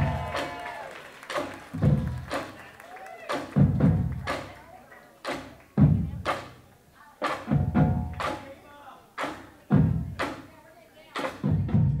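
A drumline's marching bass drums struck with mallets in an uneven rhythmic pattern, roughly two deep hits a second.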